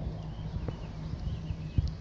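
Outdoor background noise: a steady low rumble with two soft knocks, the first a little under a second in and the second near the end.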